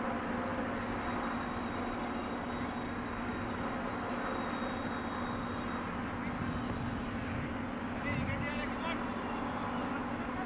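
Open-air ambience at a cricket ground: a steady low hum and rushing background noise with distant, indistinct voices, and a brief cluster of high chirpy calls about eight seconds in.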